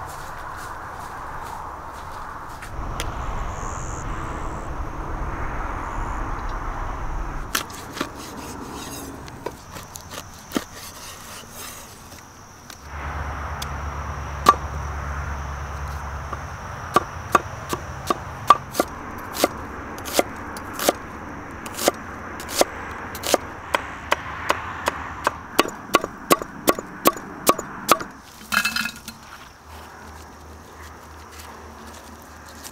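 Large knife chopping onions on a wooden cutting board: sharp, evenly spaced knocks that start in the second half and get quicker toward the end, about two a second.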